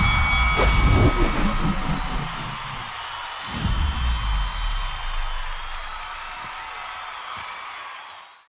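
Cinematic logo sting for the outro: a deep boom with whooshes at the start, a second boom about three and a half seconds in, then a ringing tail that slowly fades away.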